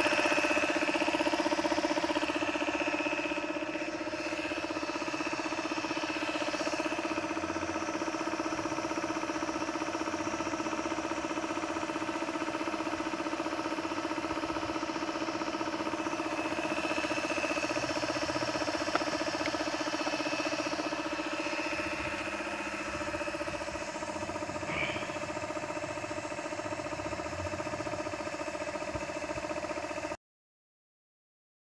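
Homemade air compressor running: a small electric motor belt-driving a compressor pump, giving a steady whine. A single sharp click near the middle.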